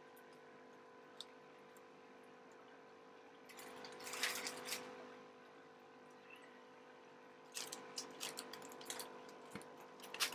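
Faint rustling and crinkling of plastic fish-transport bags being handled, in two short spells about four and eight seconds in, over a steady faint hum.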